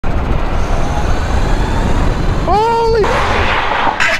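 Heavy wind buffeting and road rumble on the onboard microphone of a Sur Ron-powered 72-volt electric go-kart running at high speed. About two and a half seconds in there is a brief pitched sound that rises and then falls, followed by a steady hiss.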